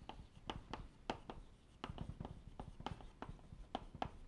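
Chalk writing on a blackboard: a faint, irregular string of quick chalk taps and strokes as words are written out.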